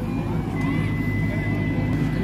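Cattle-market ambience: background voices over a steady low engine-like hum. A thin, steady high tone comes in about half a second in.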